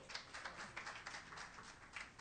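Sparse applause from a small audience: a few people clapping, irregular and fairly faint.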